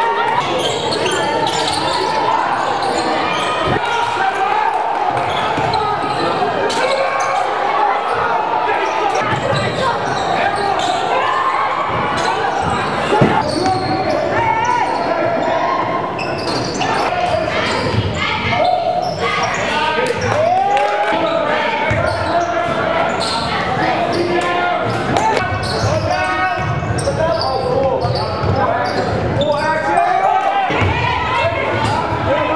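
Live game sound from a high school basketball game: a steady babble of crowd and player voices and shouts, with the ball thudding on the hardwood court, echoing in a large gym.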